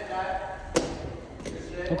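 Two sharp clacks from a Big Ripper bicycle being ridden on its back wheel, about two thirds of a second apart, echoing off bare concrete.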